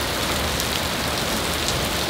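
Heavy rain falling on a paved path: a steady, dense patter of drops splashing on the hard surface.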